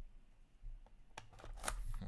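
Plastic shrink-wrap being cut and peeled off a trading card box. After a quiet first second come a few sharp clicks and a short burst of crinkling plastic.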